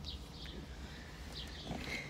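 A bird chirping outside, a few short high falling chirps, over a low steady rumble, with a faint knock near the end.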